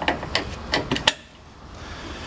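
Brass quick-connect coupling on a jumper hose being pushed and snapped onto a brass fitting: a handful of sharp metallic clicks in the first second or so, then quieter.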